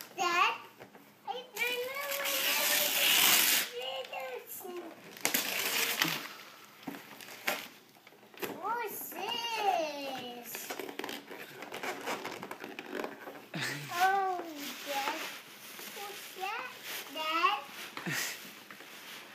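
A toddler's high voice babbling and exclaiming, with bursts of wrapping paper crinkling and tearing. The loudest crinkling comes about two to three seconds in.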